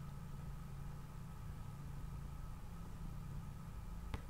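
Faint steady low hum of room tone, with no distinct events.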